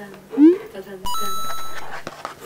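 Edited-in cartoon sound effects: a quick rising glide, then about a second in a steady electronic beep that steps up in pitch and holds for most of a second before fading.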